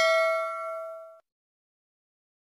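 A bell 'ding' sound effect from a subscribe-button animation, several bell tones ringing out and fading away a little over a second in.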